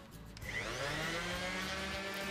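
Electric random orbital sander switched on about half a second in, its pitch rising as the motor spins up, then running steadily.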